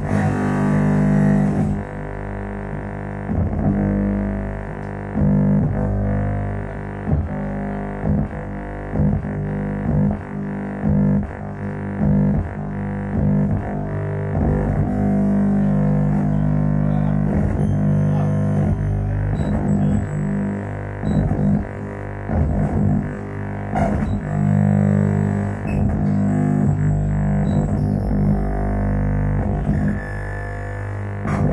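Electronic drone music: a low, sustained droning chord, broken again and again by short stuttering cuts and clicks. Faint short high tones come in over it in the second half.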